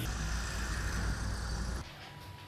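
Steady outdoor background noise with a low rumble, which cuts off abruptly near the end.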